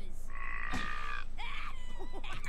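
Cartoon episode soundtrack playing: a high, nasal held vocal-like note lasting about a second, with a click partway through, between faint character voices.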